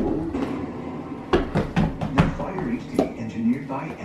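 A small child's indistinct vocalising and voices, with several sharp knocks and thuds from a small toy basketball and hoop at play.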